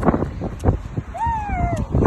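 Kick scooter wheels rolling on a wet path, with wind on the microphone. About a second in, a short high-pitched cry rises and then falls.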